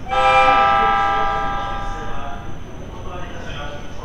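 Horn of an E257 series electric train, sounded once as the train pulls into the station. It starts suddenly and fades out over about two seconds.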